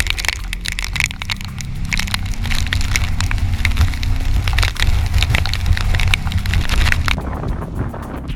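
Typhoon-force wind buffeting the microphone in loud, crackling gusts over a deep rumble, with storm-surge waves surging across a flooded seafront. The crackle thins near the end.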